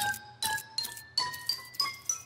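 Cartoon sound effect of about six short glassy plinks, each a little higher in pitch than the one before, one every third of a second or so. It goes with a shape-shifting blob shrinking away to a dot.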